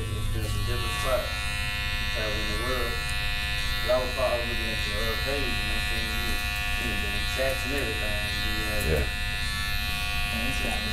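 Electric hair clippers running at the chair: a steady, unbroken buzzing hum with many overtones, during a haircut.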